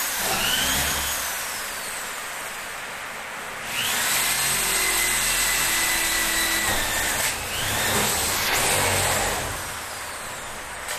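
Handheld corded power drill running at a gypsum ceiling, its motor whine rising as it speeds up and falling as it slows. It runs steadily from about four to seven seconds in, dips, then runs again until near the end.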